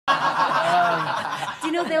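People chuckling and laughing, with a man's voice breaking into a laughing "well" near the end.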